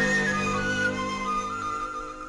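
Orchestral passage of a 1963 Spanish popular song recording, without singing: a flute plays a short melody over held lower notes.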